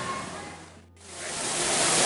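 Indoor waterfall rushing: after a sudden break about a second in, the steady hiss of falling water fades in and grows loud. Before the break, faint lobby background fades away.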